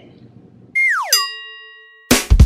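Edited-in cartoon sound effect: a quick falling whistle-like glide, then a bright bell-like ding that rings on and fades away.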